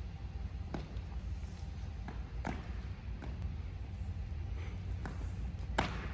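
Steady low hum of a large gymnasium's room noise, broken by four short sharp knocks, the loudest near the end.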